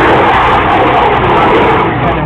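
A rocket racing airplane's Armadillo Aerospace rocket engine burning overhead: a loud, steady rushing noise that drops away at the very end.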